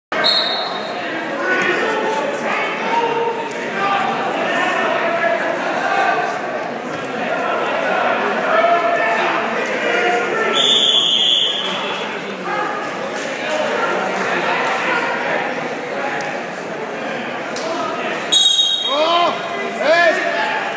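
Crowd of spectators talking and calling out in an echoing gym while a wrestling bout goes on. A brief high squeak cuts through about halfway, and again near the end.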